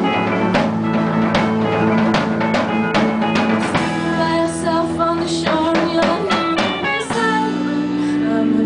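Live band playing a pop-rock song: drum kit, electric bass and electric guitar, with a woman singing into a handheld microphone.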